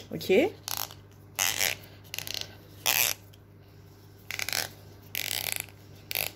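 Stuck plastic cap of a brow-glue tube being twisted and forced open by hand: a series of harsh grating, ratcheting scrapes, each lasting well under a second and coming about once a second.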